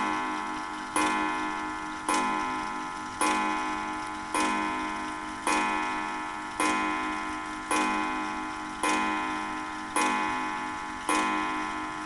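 Ansonia mantle clock striking the hour: a slow, even run of strikes about one a second, each ringing and dying away before the next. Eleven fall here and the twelfth follows just after. The strike counts twelve o'clock while the hands stand at half past, a sign that the strike train is out of step with the hands, as it can be on a clock with no self-correcting mechanism.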